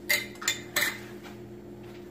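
A glass jar and its lid knocking together as they are handled: three quick, sharp clinks within the first second, then only a faint steady hum.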